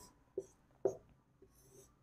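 Whiteboard marker drawing curved lines on a whiteboard: two short squeaky strokes, then a longer scratchy stroke near the end.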